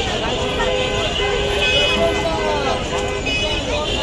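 A vehicle horn sounding in several long, steady blasts over the chatter of a busy market crowd and street traffic.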